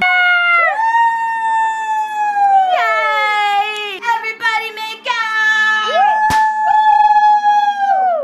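A Maltese dog and a person howling together in long drawn-out howls, several sliding down in pitch at the end, one voice overlapping another at times. A sharp click comes about six seconds in.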